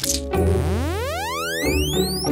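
A cartoon sound effect: a long rising whistle-like glide, climbing steadily in pitch for about two seconds, over background music.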